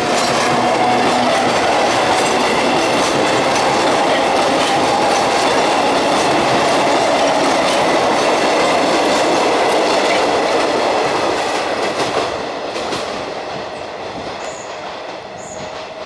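Electric commuter train passing close by: a steady rumble of wheels on rails with repeated clickety-clack over the rail joints and points, and a steady whine in the first few seconds. About twelve seconds in the sound begins to fade as the train draws away.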